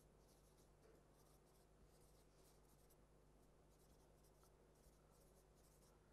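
Very faint whiteboard marker writing: a run of short scratchy strokes over a low steady hum, close to silence.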